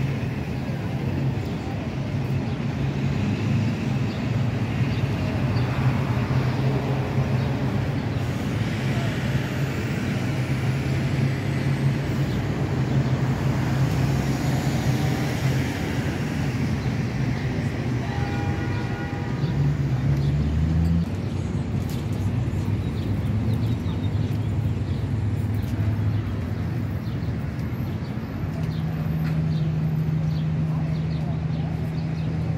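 Steady low rumble of city traffic with faint voices of passers-by. A short high-pitched tone sounds briefly about two-thirds of the way through.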